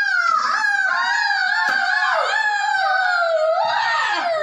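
A child's voice holding one long, very high drawn-out sound that wavers and sinks slowly in pitch, then climbs back up near the end.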